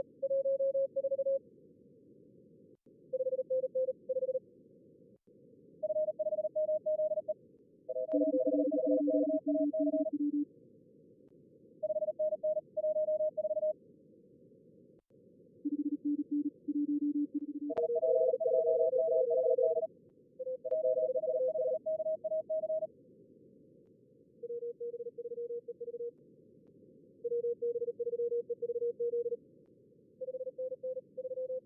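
Fast contest Morse code (CW) from SkookumLogger's practice-mode simulator: short runs of keyed beeps at several different pitches, mostly high and twice lower, sometimes two signals overlapping, over a steady hiss of simulated receiver noise. The simulated callers are set to about 38 words per minute.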